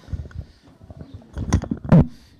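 A few dull, low thumps and knocks with faint rustling, building to the loudest bumps near the end.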